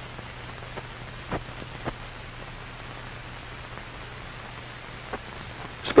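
Steady hiss with a low hum underneath and a few faint clicks: the background noise of an old film soundtrack.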